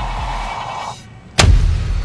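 A single shot from a scoped sniper rifle fired prone, about one and a half seconds in: one sharp, loud report with a booming tail. Its muzzle blast throws up a cloud of dust.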